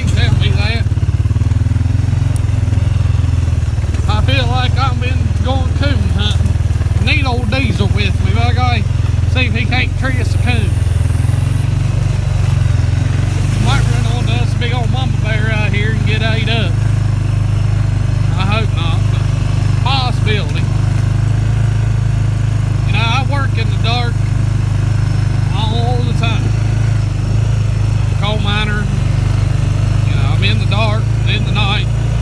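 Four-wheeler (ATV) engine running at a steady pace while riding, a low even drone throughout, with a man's voice talking over it at intervals.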